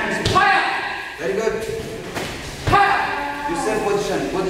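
Two heavy thuds of taekwondo strikes landing, about a third of a second in and again just before three seconds, among shouted voices and a sharp 'ha'.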